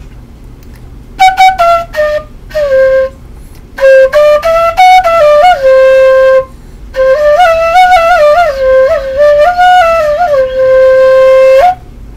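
Homemade six-hole transverse flute of thin half-inch PVC pipe playing a simple melody in three phrases, the notes stepping up and down. The last phrase ends on a long held low note.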